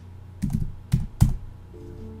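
Computer keyboard keys pressed: three heavy, separate key strokes about half a second apart, as a font name is typed in, over a steady low electrical hum.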